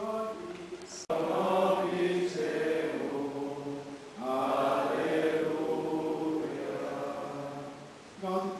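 A group of voices singing Latin plainchant in unison in two long sung phrases, the second beginning about four seconds in. A man's solo chanting is heard first and is cut off by an abrupt click about a second in.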